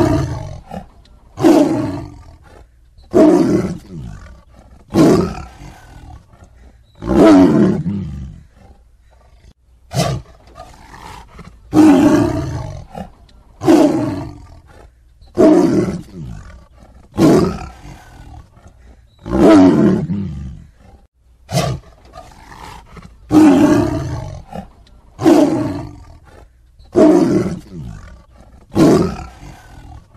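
Male lions fighting, giving a steady series of loud roaring snarls, one about every one and a half to two seconds, each falling in pitch.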